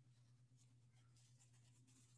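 Near silence: faint rustling of clothing and hands moving over the body, over a steady low hum.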